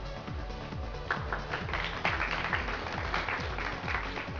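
Background music, with a group of people clapping from about a second in.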